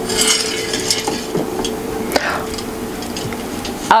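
Film soundtrack: clinks, knocks and rustling of objects being handled and moved about a room, over a steady hum.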